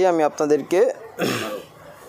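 A man speaks briefly, then clears his throat once, a short rough rasp about a second in.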